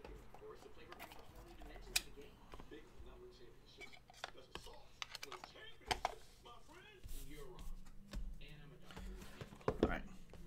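Trading cards, plastic card holders and card boxes handled on a table: scattered sharp clicks and light rustling, the sharpest about two seconds and six seconds in, with faint voices in the background.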